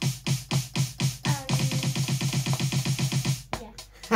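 Electronic snare-drum sample played on a MIDI keyboard, first in steady hits about four a second, then doubling into a fast roll of the kind used as a fill in a last bar. The roll stops about half a second before the end.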